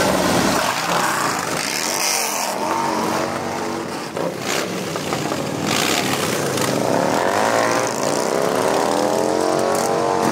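Several Harley-Davidson motorcycles riding slowly past one after another, engines revving, their pitch rising and falling as each bike goes by.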